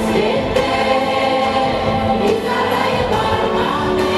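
Music with a choir singing held, slowly moving chords.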